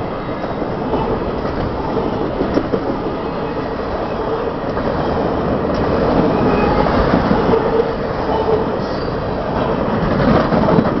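Covered hopper grain cars of a freight train rolling past at close range: the steady noise of steel wheels running on the rail.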